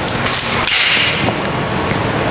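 Pressurised sprayer hissing out a short burst of slip solution onto the film, starting about half a second in and lasting about half a second, over steady background noise.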